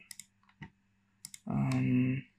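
A few light, scattered clicks from a computer's mouse and keyboard. About a second and a half in, a person's voice holds a steady 'mmm'.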